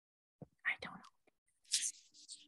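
Only speech: a woman saying a few quiet, halting words.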